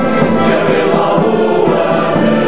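Male folk choir singing a song in parts, accompanied by accordion and acoustic guitars, the voices held in long sustained notes.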